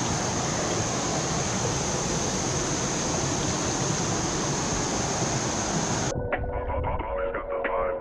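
Steady rush of a small waterfall and creek water, which cuts off abruptly about six seconds in as music with sustained tones and a regular pulse takes over.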